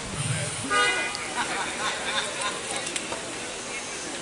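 A short vehicle horn toot about a second in, over steady street traffic noise.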